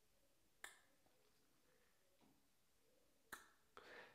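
Near silence broken by two faint, sharp mouth clicks, one about half a second in and one near the end: the tongue held by suction against the roof of the mouth, then coming away from it.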